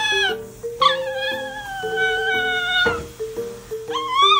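A pet's high-pitched cries over background music with a simple stepped melody. One cry fades out at the start. A long one begins about a second in and slides slowly down in pitch for about two seconds. Another begins at the very end.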